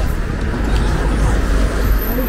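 Steady outdoor street noise with a low rumble, like traffic on a nearby road.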